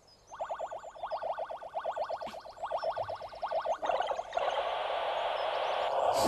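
Game Boy handheld game sound effects: a fast run of electronic blips, about nine a second, lasting nearly four seconds, then a steady hissing buzz to the end.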